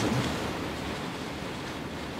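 Room tone: a steady, even background hiss, with the tail of a man's voice dying away at the very start.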